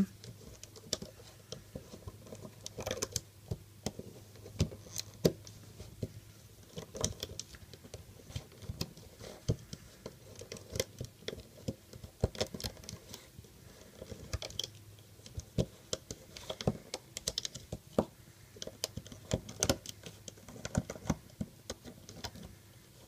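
Irregular small clicks and ticks of rubber loom bands being lifted off the plastic pegs of a Rainbow Loom with a crochet hook, as the finished figure is taken off the loom.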